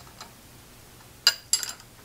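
Small steel parts of the vise hold-downs clinking against the milling machine's table and vise: a faint tick just after the start, then a sharp metallic clink a little past halfway, followed at once by a short rattle of clinks.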